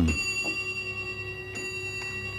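A clock's bell striking the hour: two strikes about a second and a half apart, each ringing on and slowly fading.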